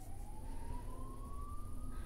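Faint siren wailing, one thin tone rising slowly in pitch, over a low steady rumble.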